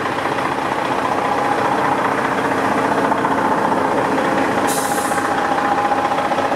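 Pickup truck's engine idling steadily.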